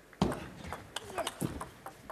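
Plastic table tennis ball bouncing, a series of short, irregular light clicks as it is bounced in preparation for a serve.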